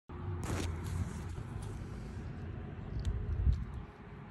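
A steady low rumble with a few soft knocks, the loudest about three and a half seconds in.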